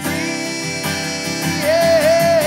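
Live acoustic country song: acoustic guitar playing, with a man's voice coming in near the end on a long held, slightly wavering note.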